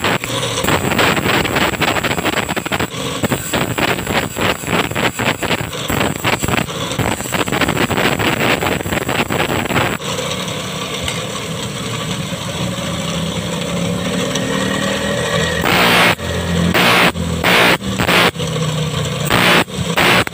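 A metal file rasping across the teeth of a handsaw in quick, repeated strokes as the saw is sharpened by hand. The strokes give way to a steadier stretch in the middle, then come about two a second near the end.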